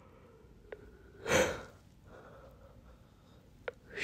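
A man draws one short, audible breath through the nose close to the microphone about a second and a half in, with a couple of faint mouth clicks before and after.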